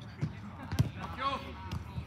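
Thumps of a football being kicked and played on the pitch: three sharp hits, the loudest a little under a second in, with players' voices calling briefly between them.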